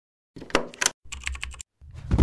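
Intro sound effect of computer-keyboard typing: two quick runs of key clicks, followed near the end by a louder, deep swelling sound.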